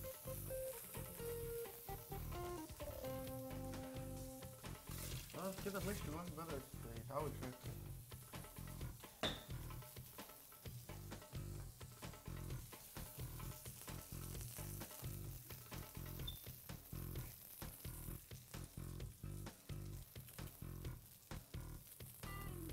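Fish fillets sizzling and crackling in a hot frying pan just after the gas has been turned off. Background music plays underneath, with a few held notes in the first few seconds.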